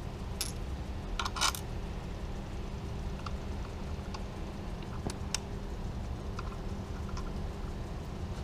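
A few light metallic clicks and clinks of bolts and clamp hardware being handled and fitted at a motorcycle handlebar: a couple about a second in, two more around five seconds in, over a steady low hum.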